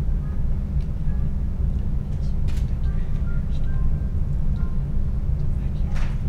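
Faint, indistinct speech of a couple exchanging their prepared wedding words, heard far off under a steady low rumble that is the loudest sound throughout.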